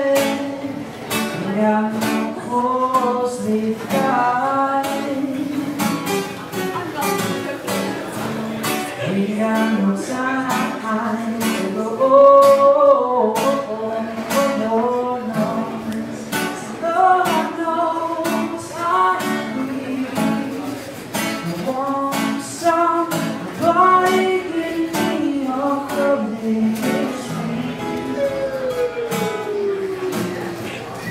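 A man singing with a strummed steel-string acoustic guitar, a live solo song with steady rhythmic strumming. Near the end the voice slides down in one long falling note.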